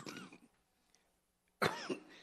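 A man coughs once, close to a microphone, about one and a half seconds in, after a short pause in his speech.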